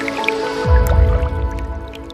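Logo sting: sustained music with liquid dripping and splashing sound effects, and a deep low hit with a falling sweep a little over half a second in, the loudest moment, after which the sound fades out.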